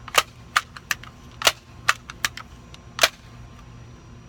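Multi-pump air rifle being pumped to charge it, the pump lever giving a string of sharp clacks through the first three seconds.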